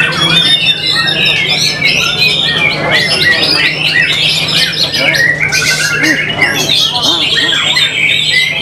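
White-rumped shama singing a continuous, rapid, varied song of whistles and chattering phrases, with other birds' songs overlapping. A steady low hum runs underneath.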